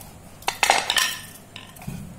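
A round metal rolling plate clattering under a wooden rolling pin as dough is rolled and handled on it, with one loud ringing clatter about half a second in that lasts about half a second, and faint knocks around it.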